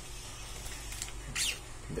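Faint handling sounds of a plastic pen casing being worked into the plunger shaft of a homemade popsicle-stick blaster: a light click about a second in and a short scrape about half a second later.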